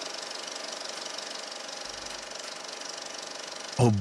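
Film projector running: a steady, rapid mechanical whir and clatter.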